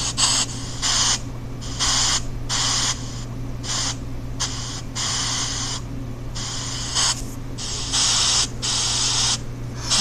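Chopped pink noise from a phone app, played through the phone's small speaker: bursts of hiss cut on and off at an uneven pace of roughly one to three bursts a second, starting as the generator is switched on. A steady low hum runs underneath.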